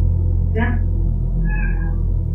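A domestic cat meowing twice, a short call about half a second in and a higher-pitched one near the end, over a steady low drone.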